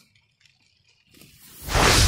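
Near silence, then from about a second in a whoosh transition sound effect swells up, rising in loudness to its peak at the end.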